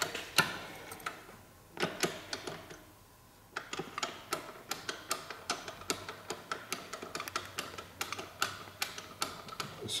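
A socket ratchet clicking as it runs down and tightens a motorcycle's rear brake caliper bolt. A few scattered clicks come first, then from about three and a half seconds in a steady run of about four clicks a second.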